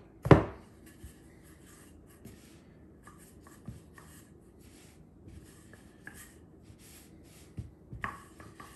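Wooden rolling pin rolling out pie dough on a floured countertop: a sharp knock just after the start, then a run of faint, short rubbing strokes as the pin goes back and forth.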